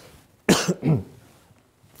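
A man coughing twice in quick succession, close to the microphone.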